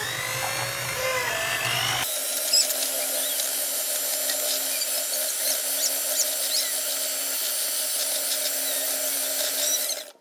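Electric hand mixer running steadily, its wire beaters whisking eggs and sugar in a bowl, with an abrupt change in the sound about two seconds in; the motor cuts off at the very end.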